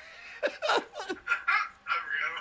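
Laughter: a run of short bursts, each falling in pitch.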